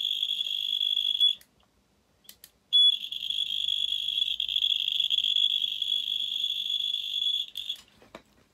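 Piezo buzzer wired into a K-II EMF meter sounding a steady high-pitched tone as the meter picks up the field of a fluorescent tube. It cuts out for about a second and a half, then comes back and stops near the end.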